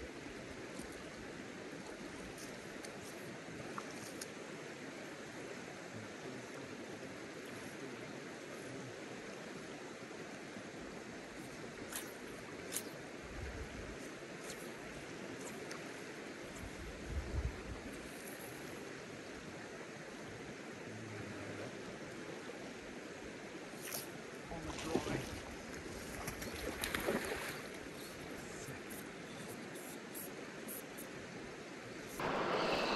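Steady rush of a river's current, with wind buffeting the microphone in a few low thumps and a brief louder stretch near the end.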